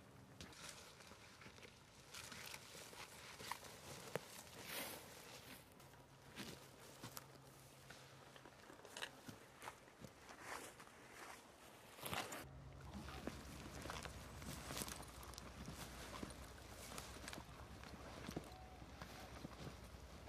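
Faint, irregular footsteps of several people walking over a forest floor of moss, heather and fallen twigs, with occasional snaps and rustles.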